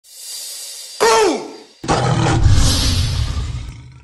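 Logo-intro tiger roar sound effect. A hiss swells for about a second, then a sharp snarl drops in pitch, and after a brief gap comes a long, deep roar that fades out near the end.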